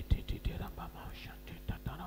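A man praying into a microphone in short, breathy, near-whispered phrases, over a steady electrical mains hum from the sound system.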